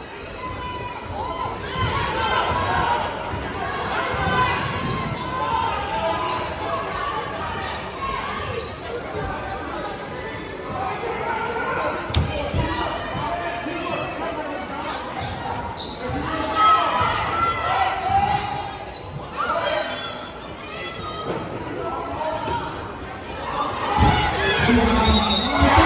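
Basketball bouncing on a hardwood gym court amid overlapping voices of players and spectators, echoing in a large hall.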